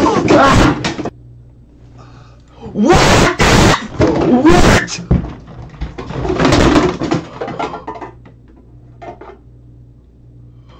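A man yelling and screaming without words in three loud, raw bursts, letting out rage. Between the bursts there are a few short knocks and thuds in a small room.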